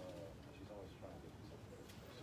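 Faint, indistinct voices murmuring in the background of a quiet room.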